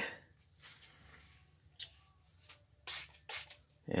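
Two quick squirts from a hand trigger spray bottle, about half a second apart near the end, wetting the sandpaper for wet sanding. Before them there is only faint soft rubbing.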